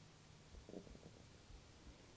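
Near silence: room tone, with one faint, short low sound a little under a second in.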